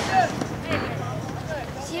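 Voices calling out at a football match: short, scattered shouts from sideline spectators and players during play.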